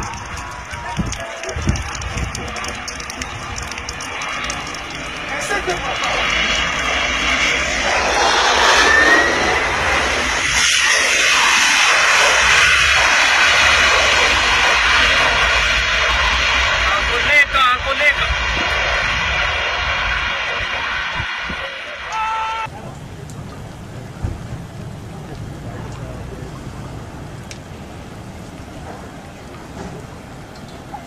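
Jet airliner engines running loud on a runway, with steady high whining tones over a low rumble. They build up from about eight seconds in, then cut off suddenly about two-thirds of the way through to a quieter low rumble.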